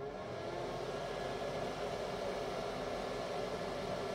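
Electric nail dust collector switched on, its suction fan running with a steady whir that swells slightly in the first second as it spins up.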